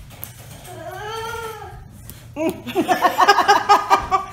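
A single drawn-out, high cry about a second in, rising then falling in pitch, then a man laughing hard in quick repeated loud gasps from just after two seconds on.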